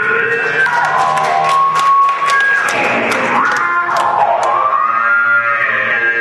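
Bass clarinet improvising a funk line over a live band, with the pitch sweeping up and down through the middle of the passage. Sharp ticks from the drum kit run at about three a second for the first few seconds.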